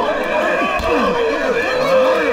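Many men's voices yelling and whooping over one another during a brawl, their cries swooping up and down in pitch, with one long yell held through the second half.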